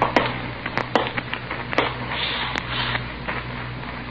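Background of an old radio-drama recording: a steady low hum with scattered sharp clicks of record-surface crackle, and a soft brief scrape about two seconds in.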